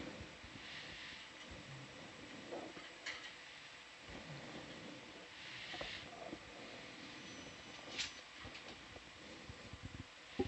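Quiet control-room comms background: a low hiss with two soft rushing noise patches and a few faint clicks, plus a brief thin high tone shortly after halfway.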